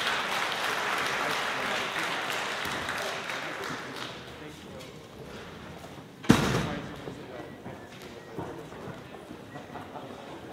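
Audience noise in a concert hall, fading over the first four seconds, then one loud thud about six seconds in. After it come faint knocks and shuffling from musicians moving chairs and stands during a stage changeover.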